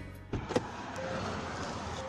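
Steady road-traffic noise from a busy highway. About half a second in there are two short clicks.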